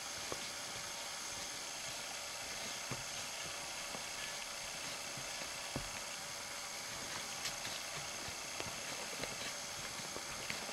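Steady background hiss with a few faint, scattered snaps and clicks from a person walking through dry brush and grass.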